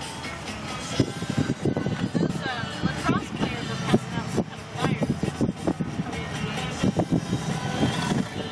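Music with a singing voice playing on a car stereo inside a moving car's cabin, over steady engine and road noise.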